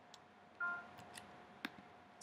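Faint computer mouse clicks while editing in Finale notation software, with one short pitched note played back by the program about half a second in as a note is entered or selected.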